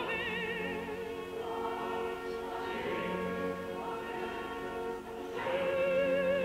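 Background choral music: voices holding long notes together, with a lead voice singing with wide vibrato that comes in louder about five seconds in.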